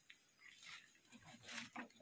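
Near silence, with a few faint, brief rustles and low murmurs.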